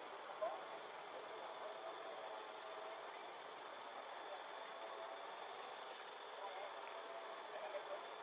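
Steady, high-pitched chorus of insects droning without a break.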